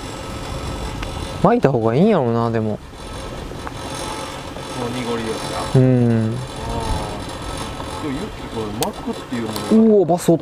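Men talking in Japanese in short exchanges over a steady background hum.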